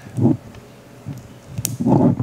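Quiet room tone while the temperature probe's cable and jack plug are handled, with one small click a little before the end. A short vocal sound comes a fraction of a second in, and speech begins just before the end.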